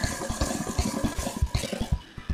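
An engine running, a rapid, even low pulsing like an idle.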